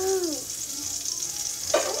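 Butter sizzling in a hot frying pan, a steady hiss throughout.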